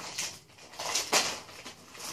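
A few brief rustles and light handling noises, the loudest about a second in.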